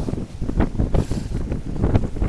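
Strong gusty storm wind buffeting the phone's microphone: a loud, uneven low rumble that swells and drops with each gust.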